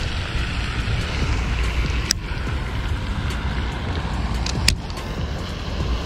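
Steady low outdoor rumble with no voice, with two sharp ticks, one about two seconds in and one near five seconds.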